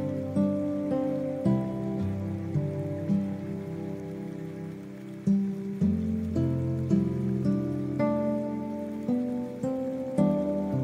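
Slow, gentle guitar music, single notes and chords plucked one after another, over a steady background of rain.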